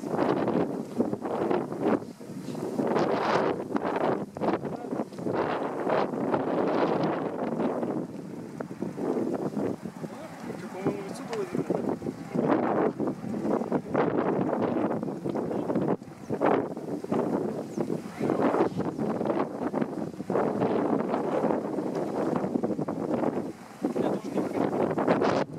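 Strong gusty wind buffeting the microphone, rising and falling in surges every second or two.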